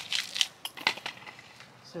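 Crackling and clicking from a thin black plastic nursery pot and the root ball of a blue chalk sticks succulent being handled with gloved hands as the plant comes out of the pot. A quick run of sharp crackles falls mostly in the first second.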